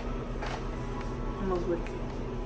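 Background music playing steadily at low level, with a brief faint voice about one and a half seconds in.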